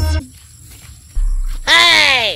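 Electronic intro music cuts off at the very start. About a second and a half in, a cow moos loudly, in one long call whose pitch rises and then falls.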